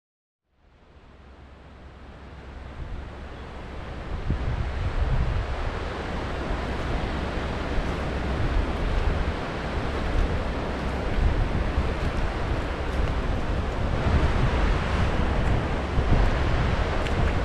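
Wind buffeting the microphone over the rush of a shallow, rocky river. It fades in from silence just after the start and grows to a steady level over the first few seconds.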